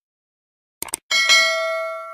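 Subscribe-button sound effect: a quick mouse click about a second in, then a bright bell ding that rings on and slowly fades.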